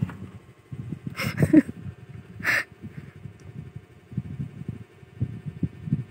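A cat hissing once, briefly, about two and a half seconds in, amid low rustling and handling knocks. There is another short breathy burst about a second in.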